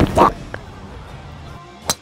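A single sharp whack near the end: a golf club striking the turf at the tee and throwing up dirt.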